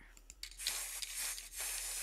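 A steady hiss from the opening of a music video, starting about half a second in.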